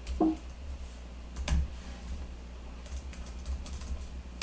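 Keys typed on a computer keyboard: a few separate keystrokes, then a quick run of light keystrokes near the end.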